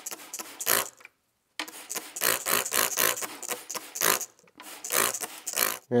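Water running and splashing as freshly zinc-plated washers are rinsed after plating. It comes in uneven spurts, with a short break about a second in.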